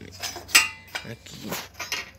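Light metallic clinks and taps as a steel carpenter's square is handled against a steel table leg and wooden top: a few sharp clicks spread out, the loudest about half a second in.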